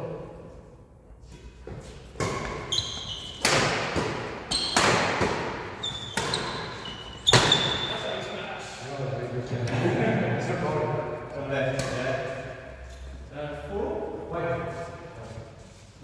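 Badminton rally in a large, echoing sports hall: sharp racket strikes on the shuttlecock every second or so between about two and eight seconds in, the loudest near the end of that run, with brief high squeaks from shoes on the wooden floor. Players' voices follow in the second half.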